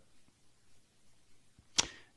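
Near silence, then near the end a single short, sharp intake of breath through the mouth just before speaking resumes.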